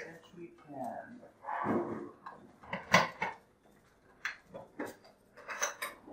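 A metal key working a post office box lock and the small metal box door being opened: a few sharp metallic clicks, the loudest about halfway through.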